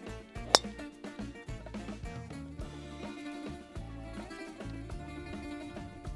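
A golf club strikes a ball off the tee once, a sharp crack about half a second in, over steady background guitar music.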